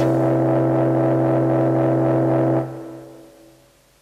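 A synthesizer holds one low, steady note rich in overtones. About two and a half seconds in it drops off sharply, and it fades away within about a second.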